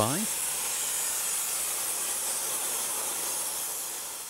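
Narrow-gauge steam locomotive venting steam low at its front, a steady hiss that fades near the end.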